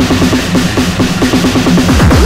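Speedcore music: a rapid, unbroken run of distorted kick drums, several hits a second, over a harsh noisy wash.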